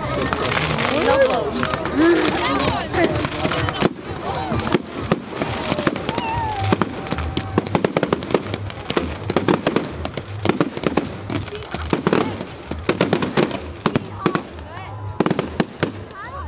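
Firework display: aerial shells and crackling stars bursting overhead, a string of sharp bangs that comes thicker and faster in the second half. People talk over the first few seconds.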